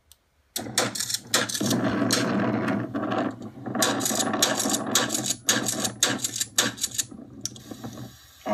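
Sound of a played-back video coming through a computer's speakers: a dense run of sharp clacks and knocks over a steady low hum, starting suddenly about half a second in and stopping shortly before the end.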